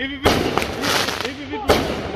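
Aerial fireworks going off: a sharp bang about a quarter second in, crackling, then a second sharp bang near the end.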